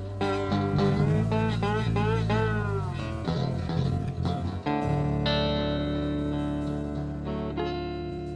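Live blues band music: electric bass and guitar playing, with bending lead notes in the first few seconds. About five seconds in, a full chord is struck and left ringing, slowly fading.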